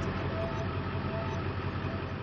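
Heavy diesel engine idling steadily, a low even engine sound that eases off slightly near the end.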